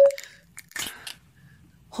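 Close-miked ASMR eating sounds: a few sharp wet mouth clicks in the first second, then faint quiet. A brief loud tone comes at the very start.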